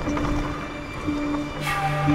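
Film soundtrack music: a pitched note repeats about once a second, and near the end a brief swell brings in a low sustained chord.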